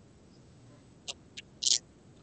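Mostly quiet room tone, then two short clicks a little after a second in and a brief hiss just after them.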